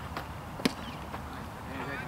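A pitched baseball striking at home plate: one sharp crack about two-thirds of a second in, over the murmur of voices from the dugout and stands.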